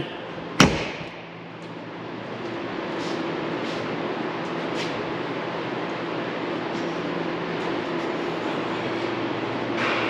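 A single sharp knock about half a second in, then steady indoor shop background noise: a hiss with a constant low machinery hum.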